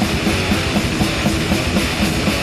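Thrash metal band playing an instrumental passage without vocals: distorted electric guitars on a repeating riff over a drum kit.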